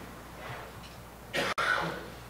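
A man clears his throat once, close to the microphone, near the end.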